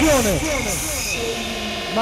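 Techno track in a breakdown with the kick drum dropped out: a rapid run of short downward-sliding sounds gives way to a held tone.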